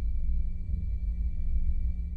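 Deep cinematic rumbling drone with a thin, steady high tone held above it: intro sound design under an animated logo.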